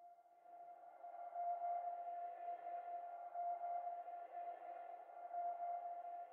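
Faint held synthesizer note in the background music, one steady pitch with a soft hiss around it, fading in shortly after the start.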